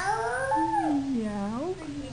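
Human voices imitating a cat: a few long, sliding meow cries, one high-pitched and one lower, the pitch rising and falling.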